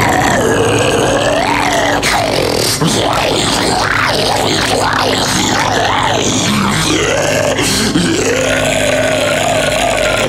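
Deathcore vocal cover: harsh guttural growled vocals over a loud, dense extreme-metal backing track that never lets up.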